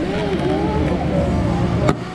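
People talking over a steady low rumble, with one sharp click near the end.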